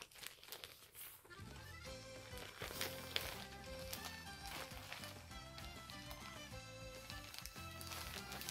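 Thin plastic bag crinkling as it is handled, then soft background music with held notes coming in about a second and a half in, with a few more crinkles over it.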